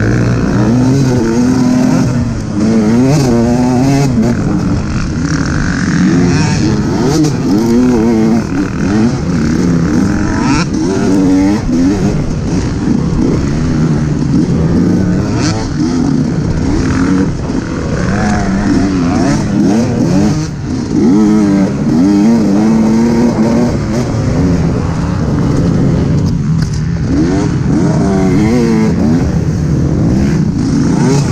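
Dirt bike engine running on a trail ride, heard from the bike itself, revving up and dropping back again and again as the rider works the throttle and gears.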